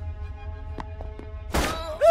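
Film score of steady held tones with a few light ticks, then a loud sudden thunk about one and a half seconds in.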